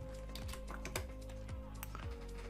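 Computer keyboard typing, a quick run of keystrokes with a couple more near the end, over background music with a steady beat.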